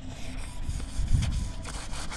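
A hand rubbing a pad along the painted metal frame of a security door, a soft uneven scrubbing, with some wind rumble on the microphone.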